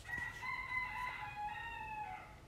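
A rooster crowing: one long crow lasting about two seconds.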